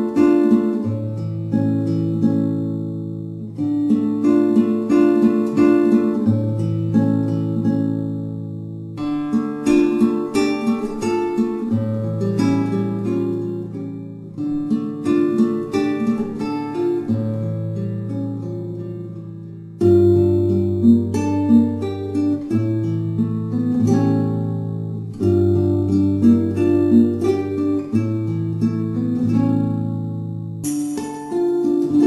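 Acoustic guitar music: plucked chords over held low notes, in phrases of a few seconds, with a louder fresh start about twenty seconds in.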